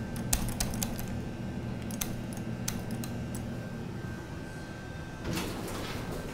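Schindler MT glass elevator car running with a steady low hum and a few light clicks. About five seconds in a broader rush of noise rises as the car arrives and its doors begin to slide open.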